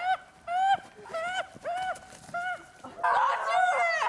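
Repeated honking calls, about two a second, each briefly rising and falling in pitch, thickening into an overlapping jumble of calls in the last second.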